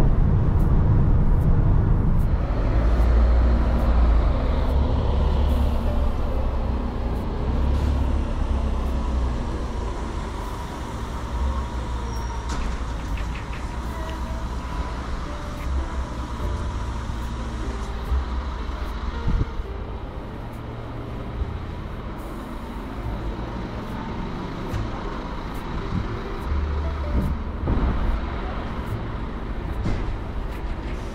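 Road and wind noise inside the cabin of an electric van cruising at highway speed, a strong low rumble with no engine note. After several seconds it gives way to quieter open-air city street sounds with passing traffic.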